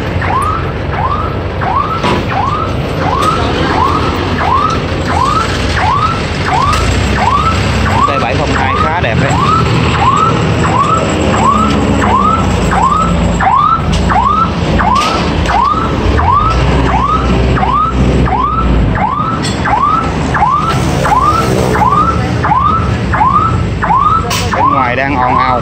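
Electronic warning alarm sounding a loud, evenly repeated chirp, about three every two seconds, over the low rumble of a running engine.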